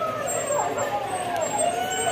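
Several people's voices, drawn out and wavering in pitch, over the low running of a pickup truck's engine moving slowly.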